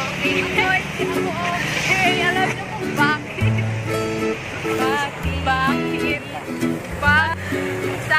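Background music: rhythmic strummed string chords over a steady bass line, with a voice over it.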